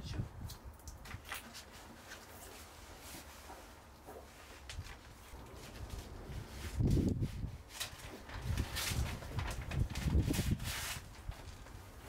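Paper backing peeled off and foil insulation pressed by hand onto a van's bare steel wall panel: rustling and crinkling with scattered ticks. A few louder low thumps come about seven seconds in and again between nine and eleven seconds.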